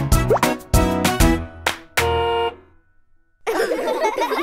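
Bouncy children's cartoon music of short plucky notes with a quick rising slide, ending on a held chord about two seconds in. After a brief silence, a busy passage with wavering pitches starts near the end.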